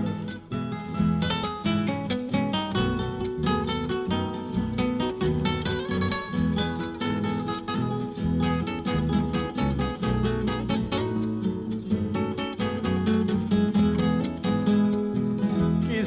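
Instrumental break in a song: acoustic guitar picking quick plucked notes over a low accompaniment, with no singing.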